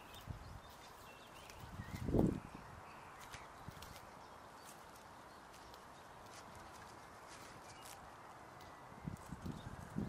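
Goat kids' hooves thudding on the ground as they spring about and jump at a fence, one strong thud about two seconds in and a run of smaller thuds near the end.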